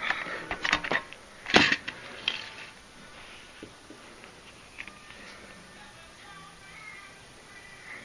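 A plastic CD jewel case being handled and its booklet pulled out: a quick run of clicks and rustles over the first two seconds or so, the loudest a single sharp plastic click about a second and a half in, then only faint handling.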